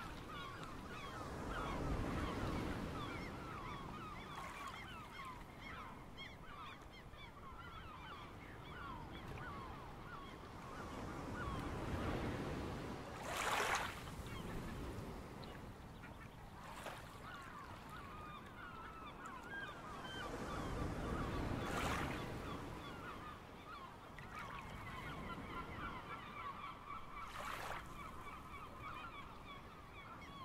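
A flock of waterbirds calling continuously in short honking notes, with the wash of waves swelling and breaking a few times.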